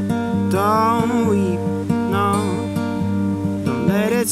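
Capoed steel-string acoustic guitar played in a steady, even rhythm, with a man's voice singing two held, wavering notes over it, about half a second in and again just after two seconds.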